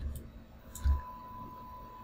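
Two computer mouse clicks about 0.7 s apart, each with a dull low thud. The second is the louder.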